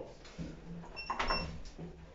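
Two short, high electronic beeps about a third of a second apart, a second in, with a few faint knocks in the lift car.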